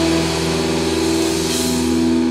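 Hard rock recording: a distorted electric guitar and bass chord held and ringing out steadily, with no new strikes.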